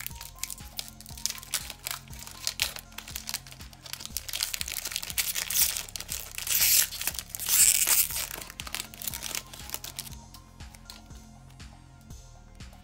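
Foil wrapper of a Pokémon booster pack crinkling and tearing as it is ripped open by hand, loudest a little past the middle. Quiet background music plays underneath.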